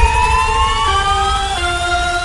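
Electronic transition effect in a music edit: a slowly rising synth tone over held notes that step down in pitch about halfway, with a low rumble underneath.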